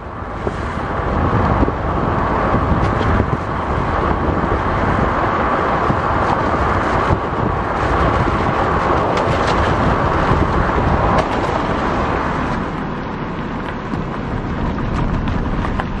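Steady road and wind noise of a car travelling at speed, rising in over the first couple of seconds and easing slightly near the end.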